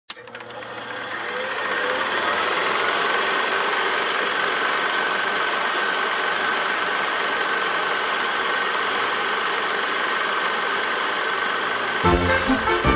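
Steady mechanical whirring and rattle that fades in over the first two seconds and then holds, with a thin high whine on top.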